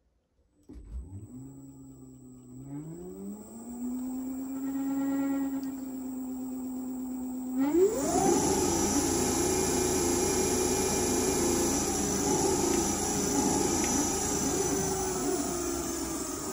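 Kaabo 1100 W electric hub motor spinning its wheel freely off the ground on a 65 V controller. Its whine rises in pitch over the first few seconds and then holds steady. About halfway through it climbs sharply higher and louder, joined by the rush of the fast-spinning tyre.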